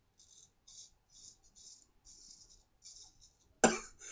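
A 6/8 round-point straight razor scraping through lathered stubble in a string of short, faint strokes. A sudden loud cough comes near the end.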